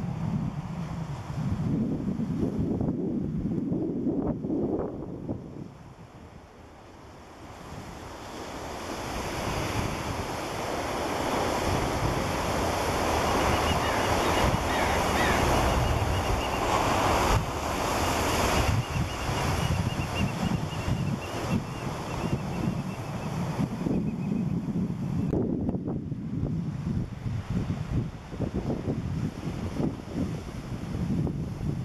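Shallow surf washing over a sandy beach, swelling loudest in the middle, with wind buffeting the microphone near the start and again near the end.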